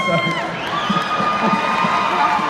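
Arena concert crowd cheering, with drawn-out whoops held for about a second each, after a man's brief laugh over the PA.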